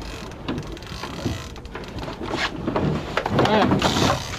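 Wind and water noise on an open boat, with scattered knocks from handling and a brief muffled voice near the end.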